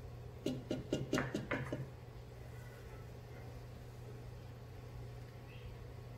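A quick run of light clicks and knocks from a small container being handled and tipped over a plastic blender beaker, in the first two seconds. After that only a faint steady low hum remains.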